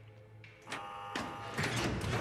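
A short electric buzz lasting about half a second, starting about two-thirds of a second in, then a louder clatter: a prison security door being released and opened.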